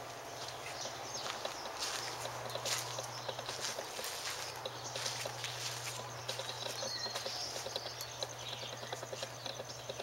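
Footsteps on dry ground, a run of irregular small crunches and clicks, over a steady low hum.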